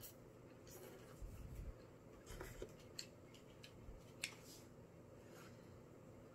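Near silence with faint, scattered clicks and light scrapes of a plastic fork against a foil spaghetti tray and plate while eating; the sharpest click comes about four seconds in.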